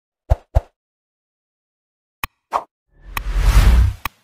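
Edited intro sound effects: two quick plops a quarter second apart, two sharp clicks about two seconds in, then a deep whoosh swelling with a low rumble near the end, the loudest sound.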